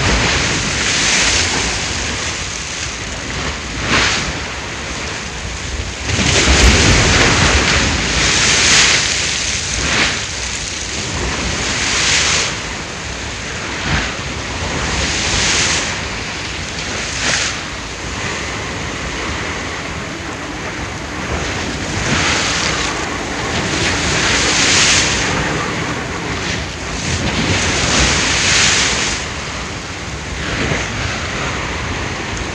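Ocean waves washing and surging, with wind, the sound rising and falling in swells every few seconds.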